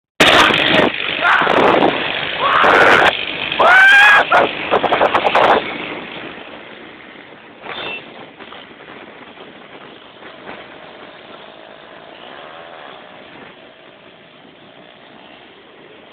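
Motorcycle engine noise mixed with voices, loud and distorted for the first five seconds or so, then dropping to a quieter steady street rumble with an engine faintly rising in pitch about two-thirds of the way through.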